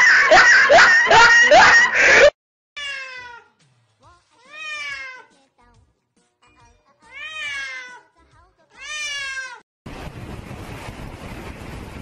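A wet cat meowing four times, each meow drawn out and sliding down in pitch. Before the meows come loud shrill cries that cut off suddenly about two seconds in, and after them, from about ten seconds in, a steady rush of wind on the microphone.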